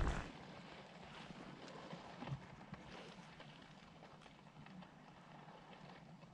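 Drifting river ice floes and slush, faintly ticking and crackling over a low, steady hiss.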